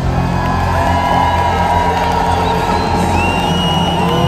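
Loud amplified live music with a steady bass, over a large crowd cheering and whooping.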